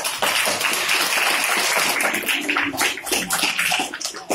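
Audience of children applauding: dense clapping that grows patchier near the end.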